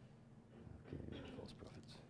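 A faint, low voice-like sound lasting about a second, with light paper rustling near the end, against near-silent room tone.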